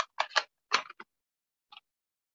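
Craft supplies being handled and put down on a tabletop: a quick run of about five short clicks and taps within the first second, then one faint tap near the end.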